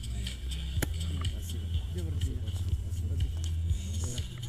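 Steady low rumble of wind buffeting an action camera's microphone, under indistinct voices and music, with one sharp click about a second in.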